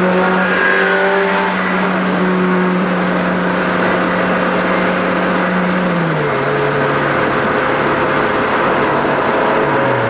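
Car engine running steadily at highway cruising speed, heard from inside the cabin with road and wind noise over it; the engine's pitch steps down once about six seconds in and then holds steady at the lower note.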